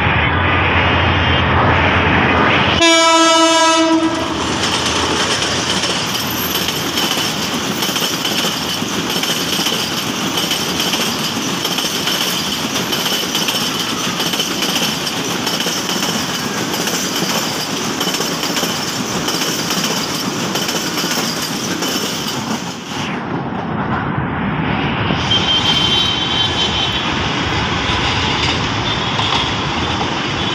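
Bangladesh Railway diesel-electric locomotive running up with a low rumble, sounding its horn once for about a second, then its passenger coaches passing close by with a loud, steady rush of wheel and rail noise. About three-quarters of the way through the sound changes to the running noise of a train further off.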